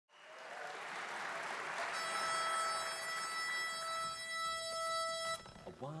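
Audience applause fading out, then a pitch pipe sounds one steady reedy note for about three seconds, giving the quartet its starting pitch; it stops just before a voice begins a count-off.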